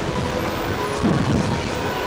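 Steady rumble of rushing air and ride motion on the onboard microphone of a slingshot ride capsule.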